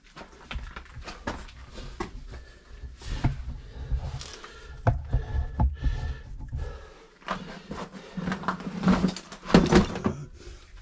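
Scrapes, knocks and rustling as a person clambers over rough lava-tube rock with a camera and backpack, the movements loudest near the end.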